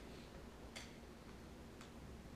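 Two faint clicks of a computer mouse, about a second apart, over quiet room tone with a low steady hum.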